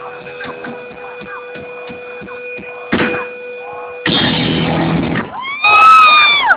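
Live metal concert sound between songs: a steady high hum from the stage amplifiers under scattered crowd shouts. A loud burst of noise comes about four seconds in and lasts about a second, and near the end a loud pitched tone slides up, holds and slides back down.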